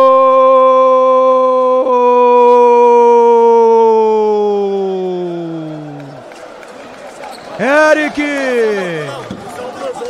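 A Brazilian TV commentator's long drawn-out goal shout, 'Gooool!', held on one loud note for about six seconds, then falling in pitch and fading out. Excited shouted commentary starts up again near the end.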